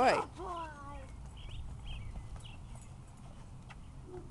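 A girl's voice drawn out in praise of the dog, falling in pitch, in the first second, then faint outdoor background with a few faint short chirps.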